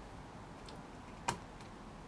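A few faint ticks and one sharp metallic click about a second in, from a steel dust-boot retaining ring being worked into its groove around a brake caliper piston.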